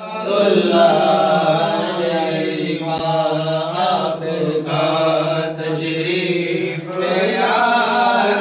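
Men's voices chanting an Islamic devotional recitation in a continuous melodic line, without pause.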